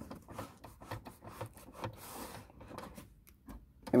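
Duct tape being pressed and rubbed down by hand onto a car's plastic console: irregular scraping and rustling with small clicks, and a longer rustle about two seconds in.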